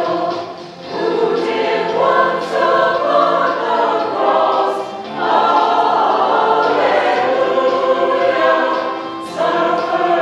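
A church choir of mixed men's and women's voices singing, with short breaks between phrases about a second in, about five seconds in and near the end.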